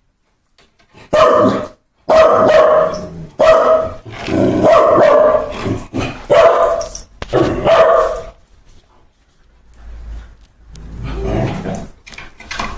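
Dog barking loudly and repeatedly: about six barks or short runs of barks in the first eight seconds.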